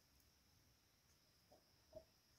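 Near silence with a faint steady high hiss. Near the end come two soft taps, the second a little louder, from thin bamboo strips being handled.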